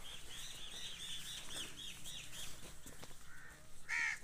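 A bird chirping in a fast run of short, high, repeated notes, about five a second, that stops a little past halfway. A louder, harsher call comes at the very end.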